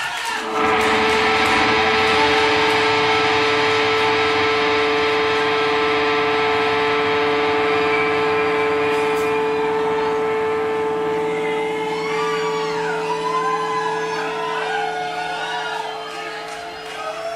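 A single held note from an amplified electric bass rings out through the stage amplifiers, fading slowly. The crowd starts whooping and cheering about twelve seconds in.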